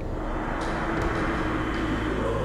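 A steady low rumbling drone from the documentary's background sound bed, with a faint held tone through the second half.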